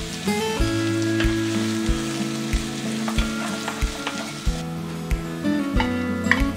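Chopped new onions and sliced garlic sizzling in hot oil in a nonstick frying pan, over background music with a steady beat.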